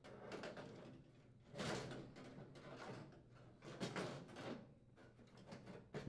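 Sheet-metal outer cabinet of a GE microwave being lowered and slid back over the chassis: quiet scraping and rubbing of metal on metal, loudest about one and a half seconds in and again about four seconds in.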